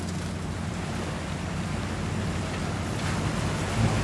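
Nissan 4x4's engine running steadily as it drives through a shallow river ford, with water splashing and churning around the wheels. It grows a little louder near the end as the truck comes closer.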